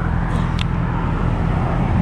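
Road traffic, a steady low rumble of car engines and tyres, with a light click about half a second in.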